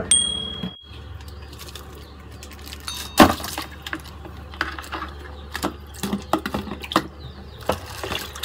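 Water sloshing, plastic crinkling and sharp clicks and knocks as a hand works a frozen plastic bag of boiled clam meat in a plastic basin of water, with a loud knock about three seconds in.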